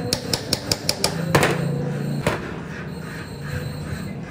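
A hammer tapping a steel pin into the hub of a Marian sewing machine's handwheel: about six quick metal taps in the first second, then two heavier knocks.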